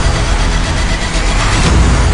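Loud intro sound design for a logo reveal: a dense, noisy swell with a heavy low rumble, laid into the opening theme music.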